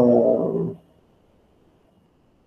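A man's voice drawing out a single vowel sound, a hesitation, for under a second near the start.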